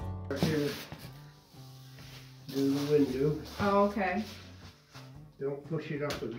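Background music fading out at the start, then quiet, indistinct talking in a small room, in short stretches with pauses between.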